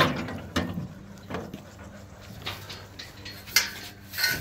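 Metal rear gate of a livestock trailer slamming shut with one loud clang right at the start, followed by a few lighter metallic knocks and rattles of the gate and its latch.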